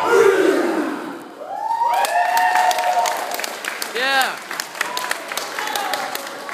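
A last shouted call from the kapa haka group falling away as the piece ends, then the audience clapping with long whoops and cheers, one whoop rising and falling about four seconds in.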